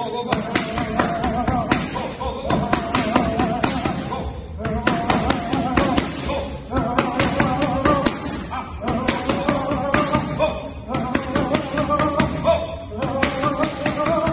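Music with a wavering melody plays while boxing gloves slap sharply against focus mitts in quick clusters of punches. Short breaks cut both sounds off together several times.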